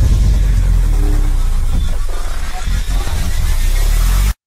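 Cinematic logo-reveal sound design: a loud, sustained deep bass rumble under a dense noisy swell.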